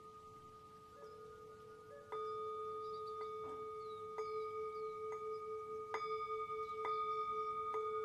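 Tibetan singing bowl played with a wooden mallet at its rim, giving a steady ringing hum that is faint at first and grows louder from about two seconds in. Light ticks of the mallet on the bowl come about once a second.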